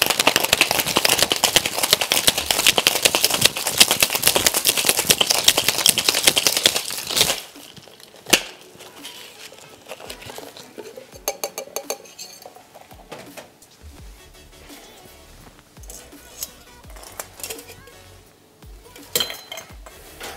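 Ice rattling hard inside a metal cocktail shaker tin as it is shaken fast and steadily for about seven seconds, then stopping abruptly. Scattered quieter clinks of metal and glass follow.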